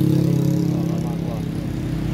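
A motor vehicle's engine running close by with a steady low hum that fades away over the first second or so, under faint voices.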